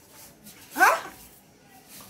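A dog gives a single short, rising yelp about a second in.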